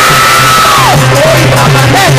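Loud live Indian devotional folk music driven by a dholak beat, with a voice holding one long high cry that drops away about a second in.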